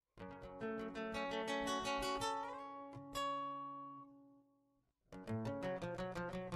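Acoustic guitar played solo: a run of plucked notes, then a chord about three seconds in that rings out and fades away, then a new run of plucked notes near the end.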